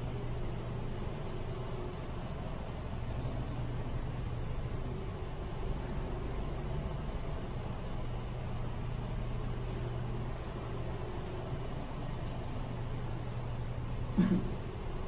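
Steady low hum of ventilation fans, an even room tone with no speech.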